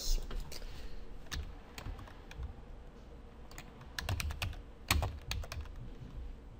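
Typing on a computer keyboard: scattered single keystrokes, with a quick run of them about four to five seconds in.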